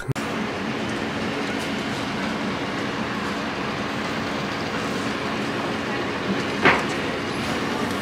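Steady background noise with a low hum, broken by one brief higher-pitched sound about two-thirds of the way through.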